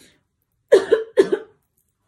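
A woman coughing: two quick, loud coughs about a second in.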